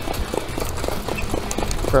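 Standardbred harness horse's hoofbeats on the dirt track in a quick, even rhythm as it pulls the sulky, over a steady low rumble.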